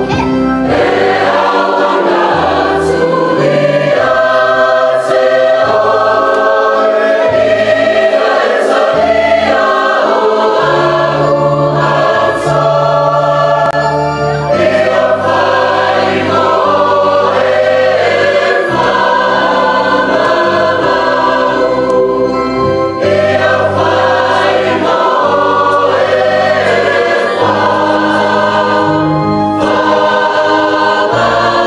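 Samoan church youth choir singing a hymn in several-part harmony, with sustained low bass notes underneath.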